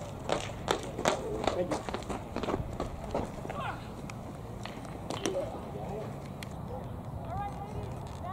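Voices talking at a ball field, with a quick run of sharp knocks or claps over the first two and a half seconds.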